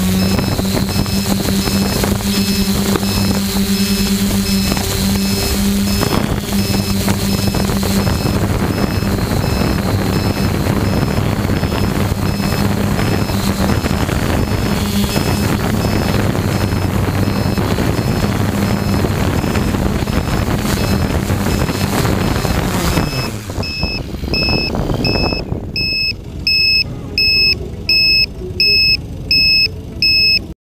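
Quadcopter drone's propellers humming steadily, then winding down about 23 seconds in as it comes down in the grass. Its electronic warning beeper is then left on its own: a high two-tone beep repeating about one and a half times a second.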